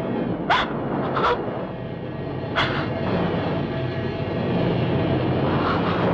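Steady rush of sea surf on a beach, broken by a woman's short sobbing gasps three or four times.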